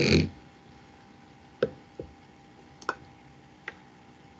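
Four light, sharp clicks, one every second or so, from a plastic graduated cylinder being handled and set on a tabletop.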